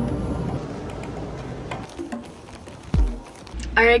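Supermarket background music and store noise while a plastic clamshell of blueberries is picked up. They fade, a single thump comes about three seconds in, then a car cabin's low hum begins and a woman starts talking at the very end.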